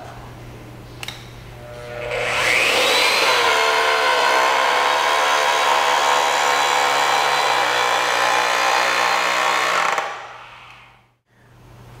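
AGP DB32 electric rotary-draw tube bender's motor and reduction gearing running under load as it cold-bends a metal tube. It soft-starts about two seconds in with a whine that rises in pitch, runs steadily for about eight seconds, then stops on its own when the preset 90° angle is reached.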